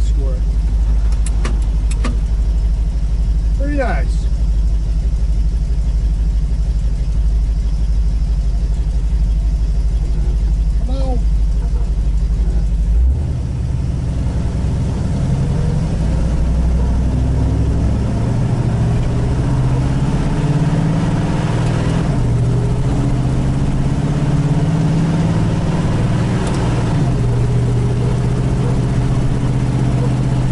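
1967 Chevy II Nova wagon's engine heard from inside the cabin, idling low and steady; about thirteen seconds in the note changes and climbs as the car pulls away and drives on.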